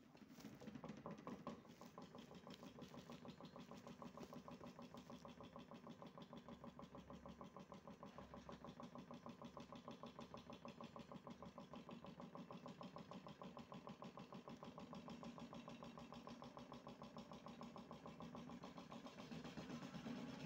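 Toy Miele washing machine's small motor spinning the drum, a faint steady hum that pulses regularly several times a second as the unbalanced load wobbles.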